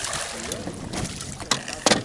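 A hooked fish splashing at the surface as it is scooped into a landing net, followed by two sharp knocks about a second and a half in.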